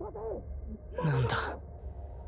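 A man's strained, breathy voice from the anime's soundtrack, in two short bursts, the second about a second in and louder, over a low steady rumble.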